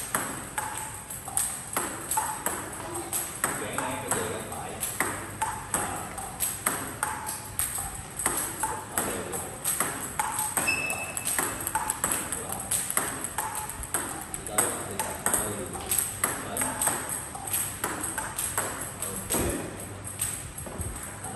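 Table tennis multiball drill: a steady run of sharp clicks as the balls strike paddles and the table, about two hits a second.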